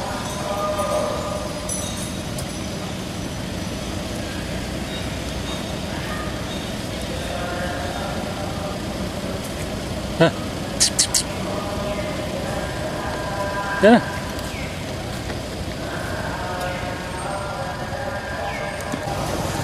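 Outdoor ambience of distant people's voices and passing traffic. There is a sharp click a little after ten seconds, three short high chirps about a second later, and a quick rising squeal near fourteen seconds.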